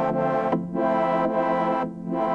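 Synth pad from Ableton's Wavetable synth holding sustained chords through the Moog MF-108S Cluster Flux, a stereo chorus-flanger delay line, giving a big wide stereo sound. The chord changes about half a second in and again near the end.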